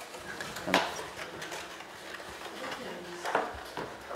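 Creased paper being handled and folded by hand, with a few crisp snaps: one sharp one near the start and two more near the end.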